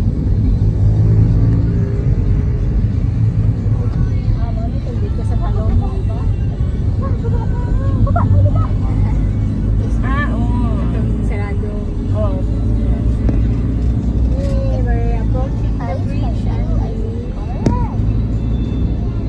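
Steady low rumble of a moving road vehicle, with engine and road noise heard from inside the cabin. Faint voices sound over it at times.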